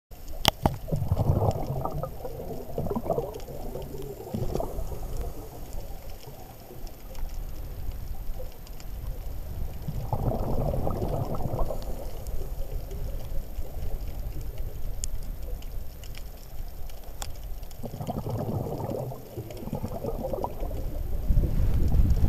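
Scuba diver's exhaled bubbles gurgling past an underwater camera, in bursts a second or two long several seconds apart, over a steady low underwater rumble.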